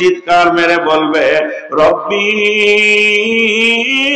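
A man's voice chanting a sermon in a melodic, sung style into a microphone: short phrases at first, then one long held note from about halfway through.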